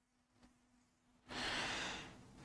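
Near silence, then one short audible breath from the lecturer, about a second and a half in, just before he speaks again.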